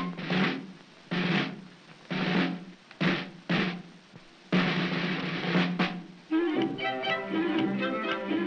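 Snare drum rolls from an early-1930s cartoon soundtrack: several short rolls, then one longer roll of nearly two seconds. A band tune of quick pitched notes begins about six seconds in.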